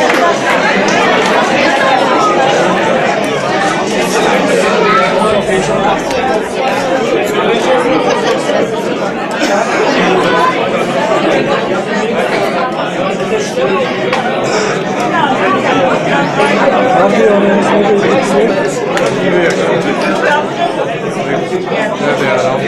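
Crowd chatter: many spectators talking at once in a large hall, a steady mass of overlapping voices.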